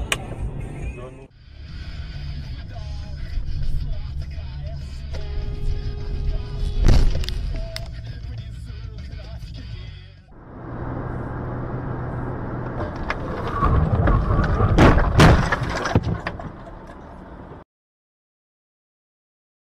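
Dashcam audio from a run of car-crash clips: low road and engine rumble with music playing, a loud collision impact about seven seconds in, and a second burst of crash impacts around fifteen seconds. The sound cuts out shortly before the end.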